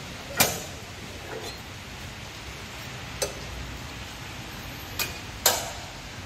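Stainless-steel weigh hoppers of a multihead weigher being unhooked and lifted off their mounts, giving four sharp metallic clicks. The loudest click comes about half a second in, one falls near the middle, and two come close together near the end.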